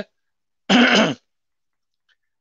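A man clears his throat once, a short sound of about half a second that comes a little over half a second in, between stretches of his speech.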